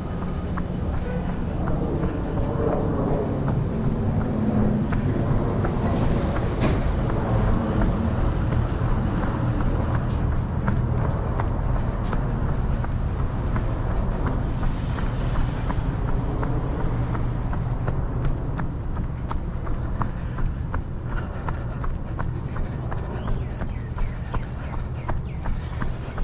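A runner's regular footsteps on a concrete sidewalk, picked up by a head-mounted GoPro, over a steady low rumble of street traffic.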